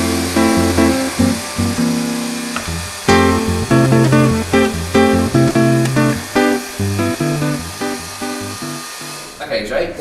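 Background music: a bass line under held chords, moving note to note in an even rhythm, stopping just before the end.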